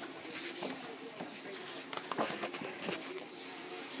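Faint rustling and a few light taps of a large paperback book being handled and turned around, over low room hiss.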